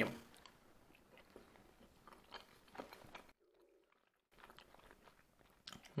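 Faint chewing of a boiled meat dumpling (pelmeni), with a few soft mouth clicks.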